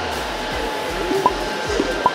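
Steady rushing whir of a small electric fan, with background music.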